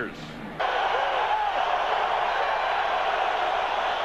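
Steady crowd noise from a football stadium crowd, coming in suddenly about half a second in after a quieter moment.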